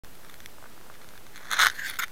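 A faint steady hiss, then short crackling rustles of a handheld camera being moved, about one and a half seconds in.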